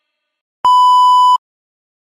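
A single loud, steady electronic beep at one fixed pitch, lasting about three-quarters of a second and starting and stopping abruptly just after half a second in.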